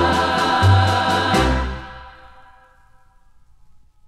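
A women's choir holds the final chord of a gospel-style song over a moving bass line. The ending cuts off about a second and a half in and dies away within another second, leaving only faint low record noise between tracks.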